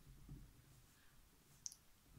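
Near silence: a pencil writing faintly on paper, with one short click about three-quarters of the way through.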